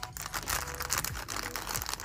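Thin clear plastic bag crinkling and rustling in irregular bursts as it is handled and pulled open.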